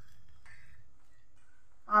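Faint soft sounds of a hand squeezing and mixing mashed potato and bread dough in a steel bowl, over a low steady background hum; a woman's voice starts right at the end.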